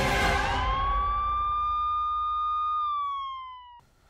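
Logo-bumper sound effect: a loud noisy whoosh that fades away over the first second or so, under a single police-siren wail that rises, holds steady, then slides down and cuts off abruptly just before the end.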